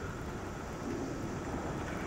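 Steady background noise with a low hum: the room tone of a church recording, with no voice.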